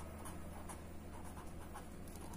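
Faint sound of a pen writing a word on paper.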